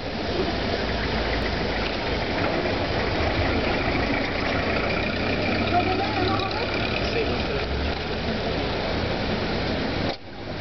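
A steady, low engine hum like a motor vehicle idling close by, under indistinct background voices and street noise.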